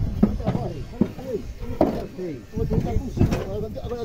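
Several men's voices talking over one another, with two sharp knocks partway through.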